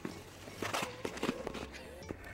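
Hockey skate blades scraping and striking the ice in several short strokes about a third of the way in and through the middle, as a beginner tries to slow down and stop.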